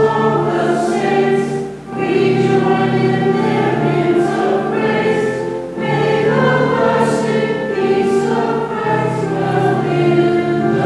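A choir sings a slow liturgical hymn in long, held phrases, with short breaks between phrases about two and six seconds in.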